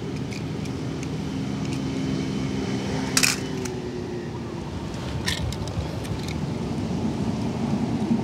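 Die-cast metal toy cars clinking against one another in a plastic basket, with a sharp clink about three seconds in and a second one about two seconds later, over a steady background hiss.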